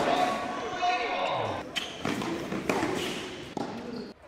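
Tennis ball struck by rackets on an indoor court, a few sharp hits about a second apart, heard against the hall's echo and faint voices.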